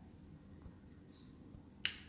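A single sharp click near the end of a quiet pause, with a faint brief hiss about a second in.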